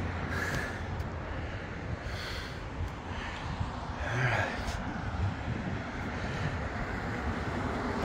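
Steady low outdoor background rumble with no clear single source, broken by a few faint, brief sounds about half a second, two seconds and four seconds in.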